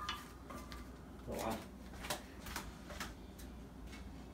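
Faint kitchen handling noise: about half a dozen scattered light knocks and clicks over a low steady hum.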